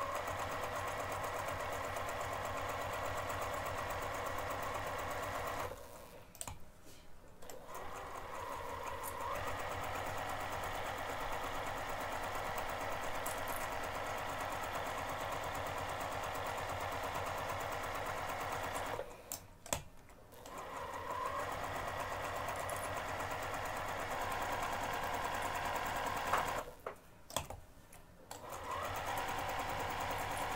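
Electric sewing machine stitching steadily through layers of cork fabric and foam interfacing at a long basting stitch. It stops briefly three times and starts up again each time.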